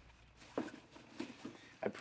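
Faint rustling and a few light taps of clothing being handled and picked up off a chair, scattered through the quiet.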